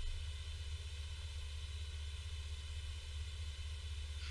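A pause with no speech: a steady low hum with faint hiss underneath, the background noise of the call's audio.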